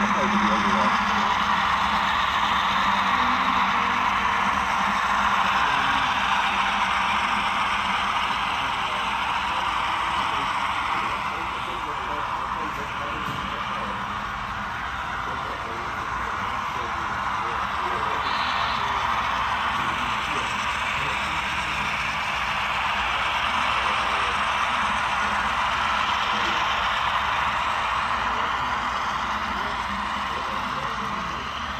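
Steady murmur of many indistinct voices, a crowd chattering in a large room, with no single speaker standing out.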